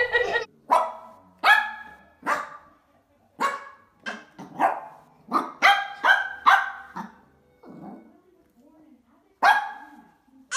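Small fluffy puppy barking: about a dozen short, high yaps, most of them in the first seven seconds, then a pause and one more near the end.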